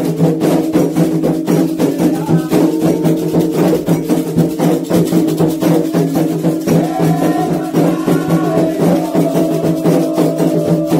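Candomblé atabaque hand drums playing a fast, steady rhythm of dense strokes, the drumming (rum) for the orixá Iemanjá.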